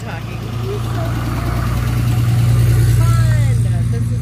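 A motor vehicle's engine rumbling as it moves past close by, swelling to its loudest about two and a half seconds in and then easing off.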